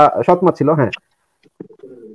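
A man's speech in the first second, then, after a short pause, a low drawn-out cooing call begins about a second and a half in.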